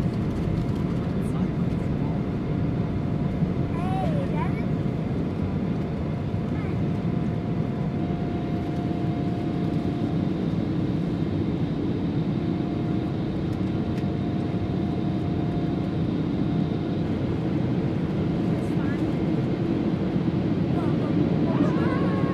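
Jet airliner cabin noise during the climb just after takeoff: steady engine and airflow noise, heaviest in the low range, with a few steady hum tones running over it.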